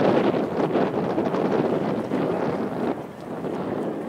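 Wind blowing across the microphone: a loud, steady rush that eases a little near the end.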